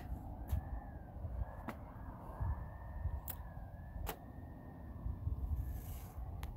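A faint, distant siren wailing in a slow, repeating rise and fall, over a low rumble, with a few sharp clicks.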